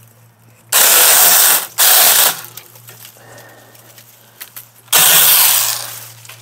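Alloyman 6-inch cordless battery mini chainsaw running in three short bursts as it cuts through small tree limbs: two close together about a second in, and a longer one near the end.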